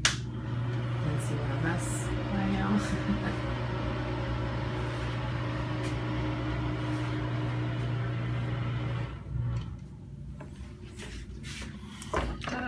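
A switch clicks, then a bathroom exhaust fan runs with a steady hum and rush of air, cutting off about nine seconds in.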